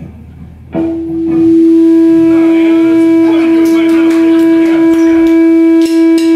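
A single loud held note from the band's amplified gear, starting suddenly about a second in and holding at one unwavering pitch as the song's opening; a few light clicks and taps sound over it.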